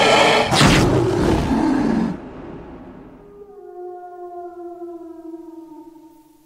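Trailer sound effects: a loud roar over a noisy crash for about two seconds, then a long howl that slowly falls in pitch and fades.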